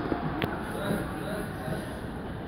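Indistinct voices across an outdoor football pitch, with a single sharp knock a little under half a second in.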